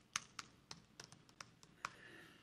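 Faint, irregular light clicks or taps, about seven in two seconds.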